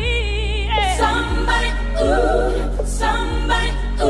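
80s-style synthwave and R&B mashup music: a deep, steady bass under a high melody with strong vibrato, with layered, choir-like voices.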